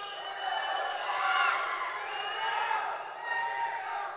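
A crowd cheering and shouting, a dense mix of many voices with no single speaker standing out.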